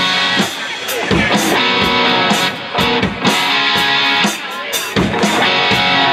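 Rock music with electric guitar and a drum kit keeping a steady beat.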